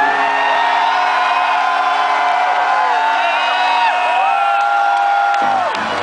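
A live rock band's last note ringing out through the PA and dying away about four seconds in, while a concert crowd cheers and whoops with long, overlapping 'woo' calls.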